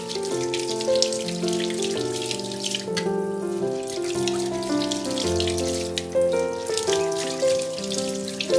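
Kitchen tap water running into a sink, a steady splashing hiss that briefly drops away about three seconds in, over background piano music.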